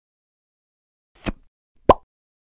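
Two short pop sound effects of an animated logo intro: a softer one about a second in, then a louder, sharper pop just as the logo's first element appears.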